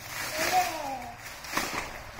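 Clear plastic shrink-wrap crinkling and tearing as it is pulled off a toy box, with a sharp crackle about one and a half seconds in. A young child's voice gives one short falling sound about half a second in.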